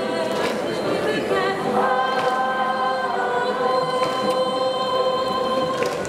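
A choir singing the winning school's song, the customary school-song performance after a Japanese high-school baseball win, with long held chords through the second half.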